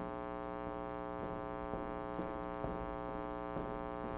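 Steady electrical mains hum, with its stack of overtones, from the amplification or recording chain, between announcements. A few faint soft knocks sound through it.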